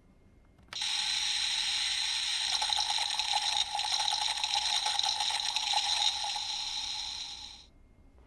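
CSM V Buckle toy belt with the Scissors advent deck playing, through its speaker, the sound effect of Scissors being devoured by his contract monster Volcancer, set off by a short press of the voice-line button. The noisy effect starts suddenly under a second in, grows fuller about two and a half seconds in, and cuts off shortly before the end.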